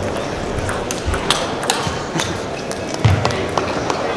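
Celluloid-type table tennis ball being struck by rubber bats and bouncing on the table, an irregular series of sharp clicks with hall echo. A duller knock stands out about three seconds in, over a low background of voices.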